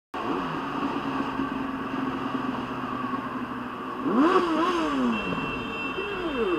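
Yamaha FZ8's inline-four engine running steadily at freeway speed. About four seconds in it gets louder and its revs rise and then fall away as the throttle changes.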